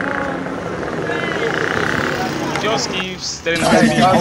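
A motor vehicle engine running steadily under low voices. Just after three seconds the sound drops out briefly, then a voice comes in louder near the end.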